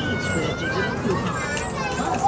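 A high, wavering voice without clear words over the fire engine's steady running noise in the cab.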